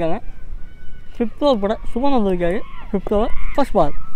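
Speech only: a man's commentary voice, in drawn-out phrases from about a second in, over a low steady rumble.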